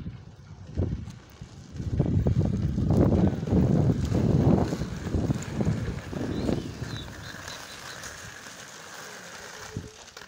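Wind buffeting the microphone of a fast-moving camera: a gusty low rumble, loudest in the middle few seconds, easing to a steadier, quieter rush near the end.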